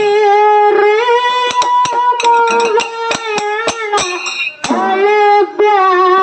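A singer holds long, sustained notes of a folk song through a microphone, accompanied by frequent sharp percussion strikes from a drum and small hand cymbals.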